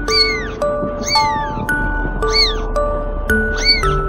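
Background music with a plain melody, over which a cat mews four times, roughly once a second, each high call rising and then falling in pitch.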